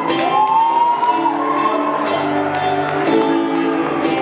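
Nylon-string acoustic guitar strummed in a steady rhythm of about three strokes a second, ringing out chords.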